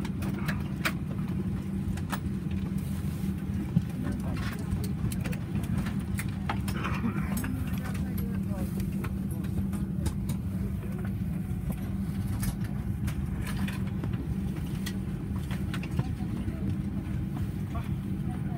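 Cabin noise of a Boeing 737-800 taxiing, heard from inside: its CFM56-7B engines running at idle as a steady low rumble with a steady hum. Scattered light clicks and rattles run through it, with a sharper click about four seconds in.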